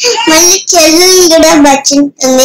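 A young girl singing in a high voice, with long held notes that waver up and down and a short break near the middle.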